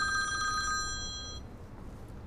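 Phone ringing with a warbling electronic ringtone on two high pitches, which stops about a second and a half in.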